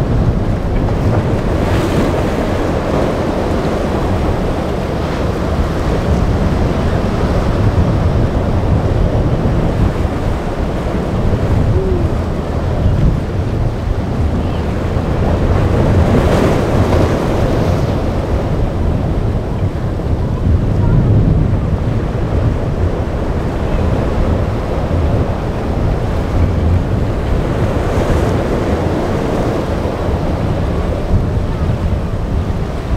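Rough inlet surf: a continuous rush of breaking waves with heavy wind buffeting on the microphone, swelling several times as bigger waves break.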